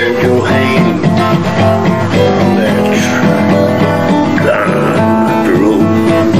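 Acoustic guitar playing a steady instrumental passage of a country-blues song, with no singing.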